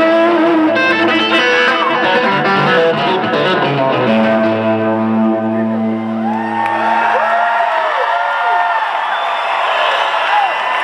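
Live electric guitar solo through stage amplification. It starts as a run of fast notes, turns to long held low notes about four seconds in, and from about six and a half seconds in the notes swoop up and down in pitch.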